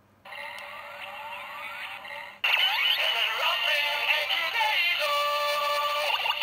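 Kamen Rider transformation toy's electronic sound playback: a few rising synth sweeps, then about two and a half seconds in a louder synthesized jingle with a sung voice.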